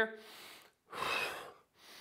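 A man's audible breath in through the mouth, loudest about a second in, with fainter breath noise either side, taken on cue as the in-breath of the exercise's breathing pattern.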